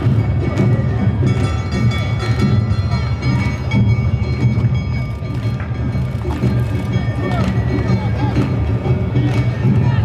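Live Awa Odori street music: drums and struck bells keeping the dance's beat, with flute tones held over them and voices calling along, playing without a break.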